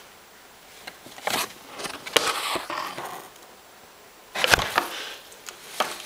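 Brown paper bags rustling and crinkling in short bursts as a cat shifts about inside them, with a louder rustle and a thump about four and a half seconds in.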